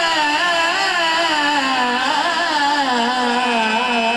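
Several men's voices singing one long, wavering melodic phrase together through microphones and loudspeakers, the pitch slowly sinking.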